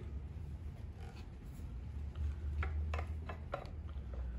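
Handling noise from a rifle barrel and action: several light clicks and taps in the second half as the parts are picked up and lined up, over a steady low hum.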